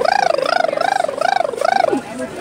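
A long, high falsetto whoop from a person's voice, warbling up and down about five times with a fluttering wobble, as a cheer.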